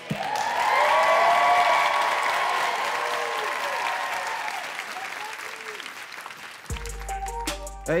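Studio audience applauding and cheering with whoops, then dying down. Near the end a hip-hop backing beat starts, with deep bass and sharp drum hits.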